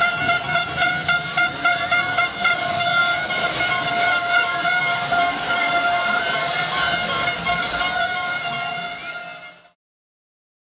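A fan's horn held in one long, steady note over the hubbub of a celebrating crowd, fading out near the end.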